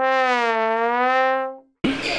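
A single held note on a brass instrument, lasting about a second and a half, dipping slightly in pitch in the middle and rising again before it fades out.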